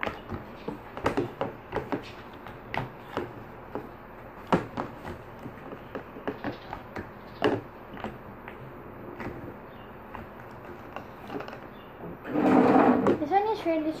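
Scattered small clicks and taps of plastic cups, tubs and spoons handled on a table while slime is mixed and scooped into a container. Near the end a louder burst of girls' voices.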